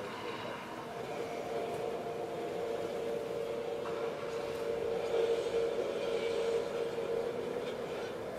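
A steady droning hum at one held pitch, swelling about five seconds in and easing off near the end.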